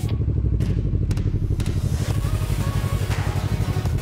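Small sport motorcycle engine running at low revs with a steady, fast pulse as the bike rolls slowly. Music comes in over it about halfway through.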